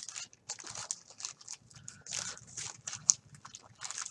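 Wax-paper card pack wrapper crinkling irregularly in the hands as it and the cards are handled, in a series of short crackles.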